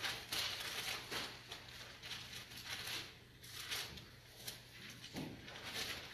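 Thin Bible pages being turned and rustled in several short bursts, the loudest near the start, over a steady low hum.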